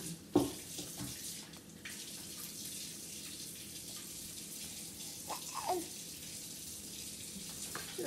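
Steady background hiss, with one sharp knock shortly after the start and a couple of brief, small vocal sounds about five seconds in.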